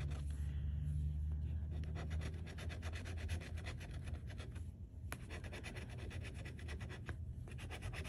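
Metal bottle opener scraping the coating off a scratch-off lottery ticket in rapid, even strokes, several a second, pausing briefly twice in the second half. A single sharp click comes about five seconds in.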